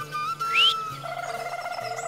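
Background music score: a high note held steady, a short rising whistle-like glide about half a second in, then a lower wavering note joins from about a second in.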